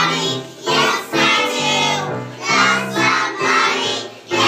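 A group of young children singing a song together, in short phrases with brief breaks between them.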